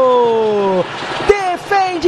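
A male sports commentator's long, drawn-out shout, held on one breath and falling steadily in pitch, cutting off under a second in. Quick, excited commentary follows near the end.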